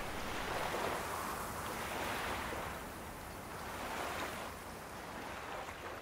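Waves washing in, a soft rush of water that swells and falls back every second or two.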